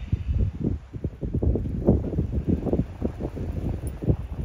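Wind buffeting the microphone: an uneven, fairly loud rumble broken by many short low thumps.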